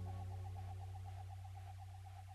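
Fade-out ending of a dub techno track: a wobbling synth tone held over a low bass drone, dying away steadily.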